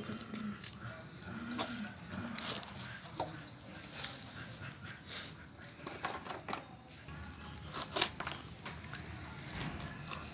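Scattered clicks and crackles of a knife cutting into and peeling the thick rind of a pomelo, with the handling of fruit and peel on a bamboo tray.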